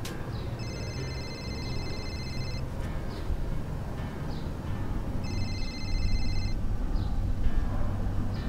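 Mobile phone ringing: two rings of a high, rapidly pulsing electronic ringtone, the first about two seconds long and the second, shorter one starting about five seconds in.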